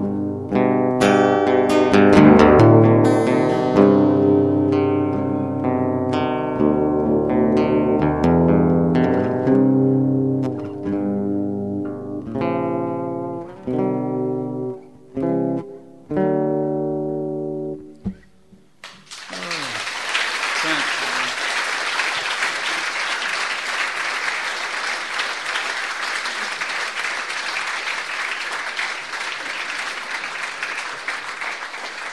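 Fingerpicked acoustic guitar playing the closing bars of a song, the notes thinning out and ringing down until the last one fades about 18 seconds in. About a second later the audience starts applauding, and the applause carries on steadily.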